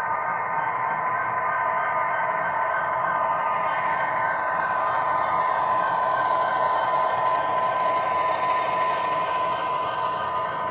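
Model diesel locomotive running past with its grain cars: a steady hum with several held tones, with whir and clatter from the running gear, getting slightly louder as it passes.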